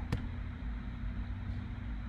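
Steady low background hum in a small room, with a single sharp click just after the start.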